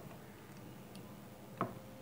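Two short, sharp taps of a pen stylus on an interactive display screen, one right at the start and a louder one about a second and a half later.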